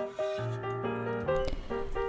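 Background music: a light instrumental melody of held notes.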